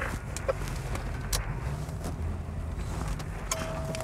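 Patrol car engine and road noise heard from inside the cabin as a steady low rumble, with a few sharp clicks in the first second and a half. A steady high tone starts near the end.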